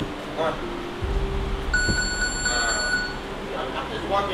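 An electronic beep: one steady, shrill tone held for about a second and a half, starting a little before the middle, with brief voices around it.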